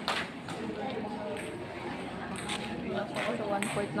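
Table tennis ball clicking a handful of times at irregular intervals on the table and paddles, over background chatter.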